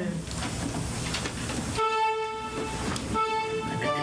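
For about two seconds only low room noise and faint movement, then music begins: an instrument sounds a long held note, followed after a brief break by another.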